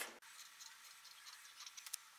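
Near silence with a few faint clicks near the end, from scissors beginning to cut a narrow strip of iron-on fusing tape in half.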